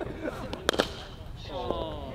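A single sharp crack about two-thirds of a second in, with men's voices around it.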